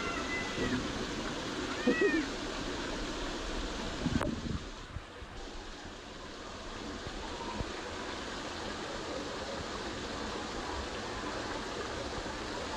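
Water spraying and splashing from a splash-pad fountain, a steady rush. A child's high-pitched voice gives two short squeals, near the start and about two seconds in.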